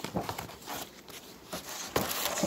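Small cardboard box and cardboard packaging being handled: a series of short rustles and taps, with a sharper click near the end.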